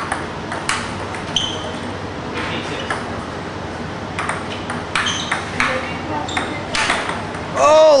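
Table-tennis rally: the ball clicks back and forth off the paddles and table about ten times at an uneven pace, a few hits with a short high ring. Near the end a man shouts.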